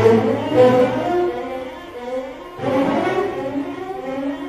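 String orchestra playing contemporary music: a loud bowed chord with cellos and double basses enters at the start and fades, then a second swell comes about two and a half seconds in.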